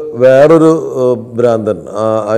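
Only speech: a man talking steadily in Malayalam.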